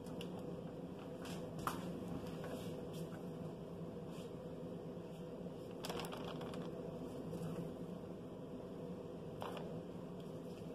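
Faint scraping and soft plops of a wooden spoon scooping thick hot-process soap out of a crock and dropping it into a plastic loaf mold. A few sharper clicks, the clearest about six seconds in, over a steady low hum.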